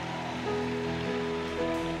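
Soft background music from a worship band: sustained chords that change about half a second in and again near the end, over a faint steady hiss.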